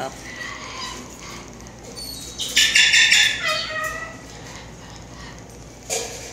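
Slender-billed corella giving one short, harsh, rasping squawk about two and a half seconds in, with softer short calls around it.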